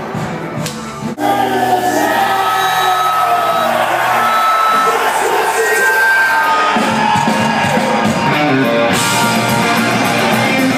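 Live band music at a concert, with the crowd cheering and singing; the sound changes suddenly about a second in, from quieter music to the full, loud live mix.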